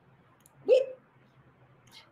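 A woman's voice saying one short word, "we", a little under a second in; the rest is a pause with only a faint steady hum.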